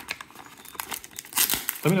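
Metallic foil trading-card pack wrapper crinkling in quick irregular crackles as it is handled and pulled open, loudest about one and a half seconds in.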